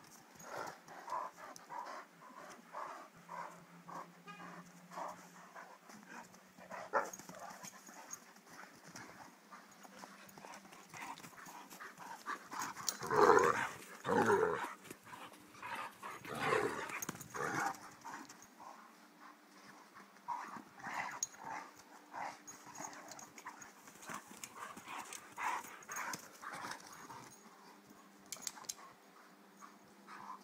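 Irish Wolfhounds at play, panting in a steady rhythm of about two breaths a second. About halfway through there are louder bursts of scuffling as one dog runs past close by, and these are the loudest sounds.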